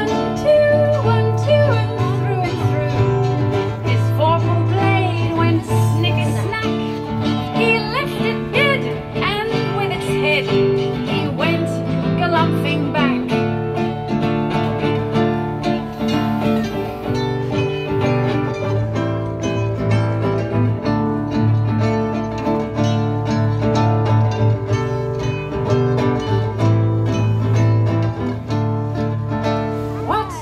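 Live acoustic guitar and a smaller plucked string instrument playing an instrumental passage of a folk song, strummed steadily, with a wavering melody line above them in the first half.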